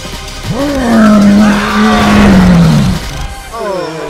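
A long, loud held vocal cry lasting about two and a half seconds, its pitch sagging as it ends, over background music.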